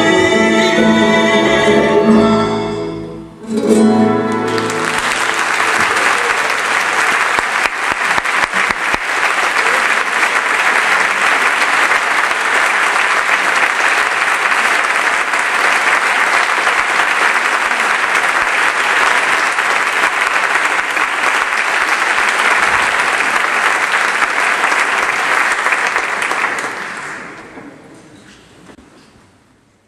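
Chamber orchestra with a nylon-string guitar holding the final chord of the bolero, a short break, and one last brief chord. A concert-hall audience then applauds steadily for about twenty seconds, fading out near the end.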